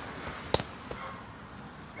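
A punch smacking into a padded boxing focus mitt about half a second in, sharp and loud, followed by a much fainter knock a moment later.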